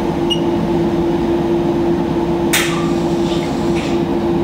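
Steady mechanical hum of laboratory equipment, holding one constant mid-pitched tone, with a brief hiss about two and a half seconds in.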